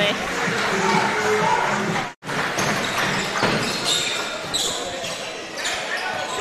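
Indoor basketball game sound: a basketball bouncing on a hardwood court under crowd noise in a hall. The sound drops out for an instant about two seconds in, then resumes.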